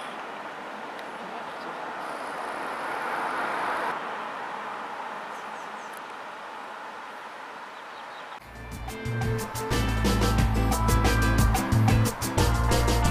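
A steady outdoor hiss with no distinct events, then background music with a heavy bass beat and quick rhythmic notes starts about eight seconds in and becomes the loudest sound.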